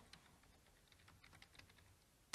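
Faint computer keyboard typing: a quick run of light keystrokes.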